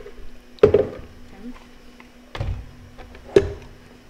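Plastic blender jar and lid being handled and fitted onto the blender base: a few knocks and clatters, ending in a sharp clack as the lid goes on about three and a half seconds in, over a faint steady hum.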